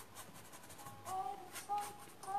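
Paintbrush rubbing and dabbing acrylic paint onto the painting in short, soft strokes, with a faint voice-like sound in the second half.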